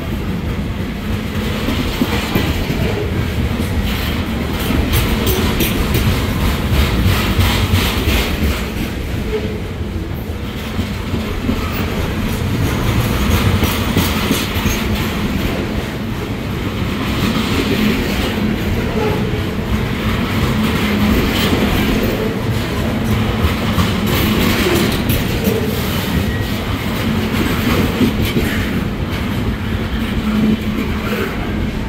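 Freight train of high-sided trash gondolas rolling past close by: a steady loud rumble with the wheels clacking rhythmically over the rail joints.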